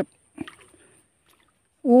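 Mostly near silence between short spoken words, broken only by one faint, brief click about half a second in.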